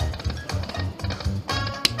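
Pokie machine's free-spin feature: rapid ticking of the spinning reels over the game's music, with a sharp click near the end as a chip lands.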